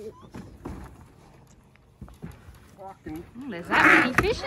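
Men's voices straining and calling out without clear words, loudest just before the end, as a heavy ice box is lifted out of a boat. A few faint knocks of handling come earlier.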